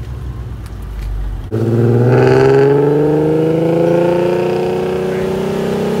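Modified Nissan VQ V6 engine rumbling low, then from about a second and a half in pulling under throttle. Its pitch rises slowly and steadily as the car gathers speed.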